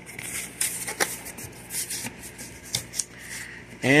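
Cardboard box being opened by hand: irregular rustling and scraping of the flaps and packing, with a sharp click about a second in.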